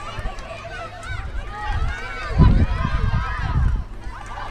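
Several overlapping shouts and calls from soccer players and onlookers, none of them clear words. Under them runs a low, uneven rumble on the microphone that is loudest a little past halfway.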